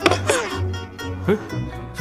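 A woman abruptly spits out a mouthful of bitter medicine with a sudden spluttering burst, then gags and retches, with a second gagging sound about a second later. The medicine's smell has made her nauseous. Background music plays throughout.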